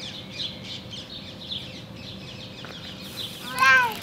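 Birds chirping steadily in the trees. Near the end comes a single loud, high-pitched cry that rises and then falls.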